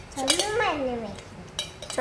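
A yellow plastic spoon clinking and scraping inside a small stainless-steel pot as a toddler stirs, with a few short clinks near the start and again late on. A young child's voice, falling in pitch, is heard during the first second.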